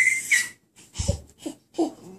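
Baby squealing with a high, breathy squeal, then short coos and grunts. A soft low thump comes about a second in.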